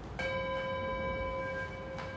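A single bell-like chime sounds about a quarter second in and rings on steadily: one clear tone with several higher overtones.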